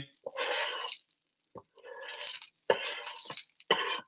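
Spatula scraping across an electric griddle, pushing off grease in several short strokes, with a couple of sharp taps in between.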